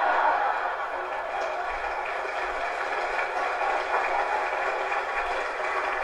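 Theatre audience laughing and applauding after a punchline, loudest at the start and easing off slightly after about a second.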